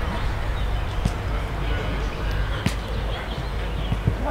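A roundnet rally: three sharp smacks of the ball being struck, about a second in, midway and near the end, over a steady low rumble.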